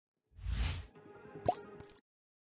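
Logo sting sound effect for an animated logo. A short deep whoosh swells up, and faint sustained musical tones follow. About a second and a half in comes a sharp pop that sweeps upward in pitch. The sound cuts off abruptly at the end.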